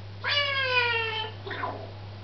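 A parrot giving one long, pitched call that falls slowly in pitch, like a cat's meow, then a short call just after.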